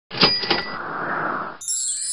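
Animated-intro sound effects: two quick metallic clicks with a ringing ding, a rushing whoosh, then a high shimmering chime from about one and a half seconds in as the title appears.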